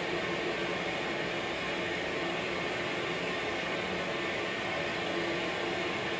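Film soundtrack of a massive cloud of steam venting from an industrial plant's ventilation shaft: a steady, unbroken rush of noise, played back over a lecture hall's speakers.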